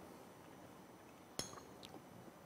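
A single sharp clink of a metal spoon against a small ceramic plate about a second and a half in, followed by a fainter tick just before the end; otherwise near silence.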